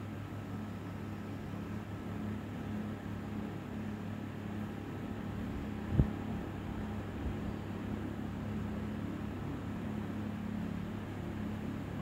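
Steady low hum and hiss of room background, with a single sharp tap about halfway through, a fingertip tapping the Dell Chromebook 11 3189's touchscreen, and a fainter tap a little later.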